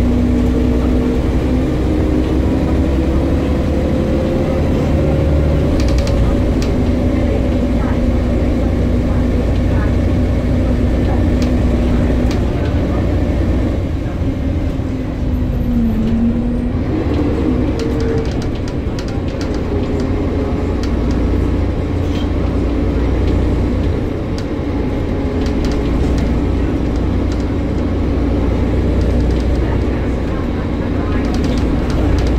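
A single-deck service bus heard from inside its saloon while under way: a steady, loud engine and drivetrain rumble whose note rises and falls as it pulls and changes speed, dipping briefly about halfway through. Light interior rattles run through it.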